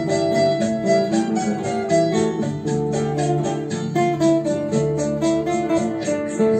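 Nylon-string classical guitar played solo and fingerpicked: a melody over bass notes in an even, quick rhythm of plucked notes.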